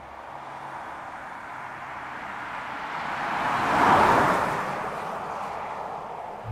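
A Citroen C6 driving past: tyre and engine noise swells to its loudest about four seconds in, then fades away.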